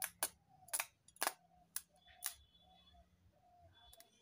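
Sharp crackling snaps of a small electric arc as the output lead of a 9-volt transformer is struck against a steel saw blade, about six snaps in the first two and a half seconds.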